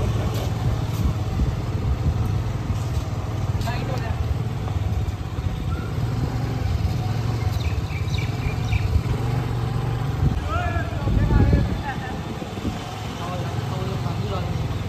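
KTM single-cylinder motorcycle engine running steadily at low speed, with a louder swell about eleven seconds in.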